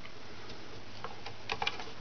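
A few faint clicks and ticks of a hook and rubber bands being worked on a plastic loom, with a small cluster of clicks about one and a half seconds in, over a steady faint hum.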